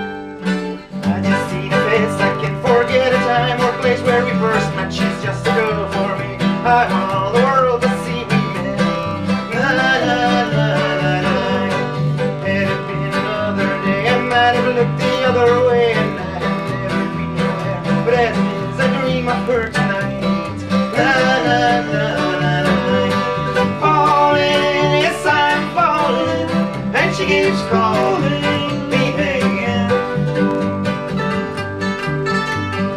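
Acoustic folk-bluegrass string trio playing an instrumental passage: mandolin and strummed acoustic guitar over a plucked upright double bass.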